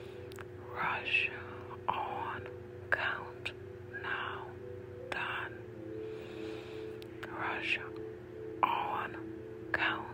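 A whispered voice repeating short words about once a second over a steady ambient music drone.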